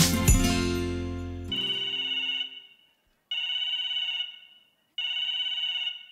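A telephone rings three times, each ring a trilling tone about a second and a half long with short silent gaps between, after a music jingle fades out in the first second and a half.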